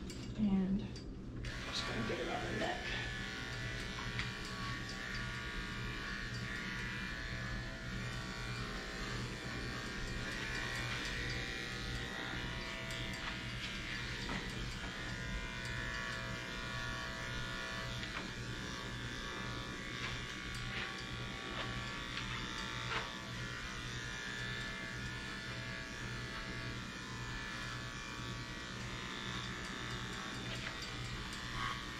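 Electric dog-grooming clippers switch on about a second and a half in and then run with a steady buzz as they cut the hair on a dog's head and neck.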